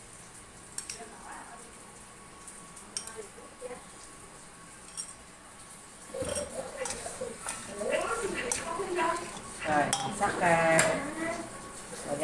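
Light clinks of a spoon on a small ceramic bowl and wooden chopsticks against a stainless steel bowl as a dressing is poured over blanched water spinach and tossed in. A few sharp separate clinks at first, busier mixing noise from about halfway.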